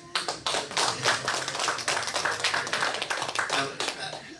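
Audience applauding, a dense patter of hand claps.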